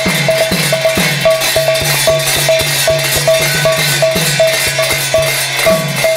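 Brass hand cymbals and a barrel drum playing a fast devotional rhythm. A bright ringing note repeats about four times a second, and the drum's deep strokes slide down in pitch.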